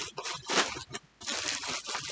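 Rustling and crinkling of packaging as a new wrist brace is taken out of it, in short irregular bursts.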